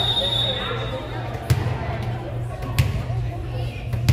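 A referee's whistle sounds one steady note for about a second, then a volleyball is bounced twice on the gym floor, about a second and a half apart, as the server gets ready to serve.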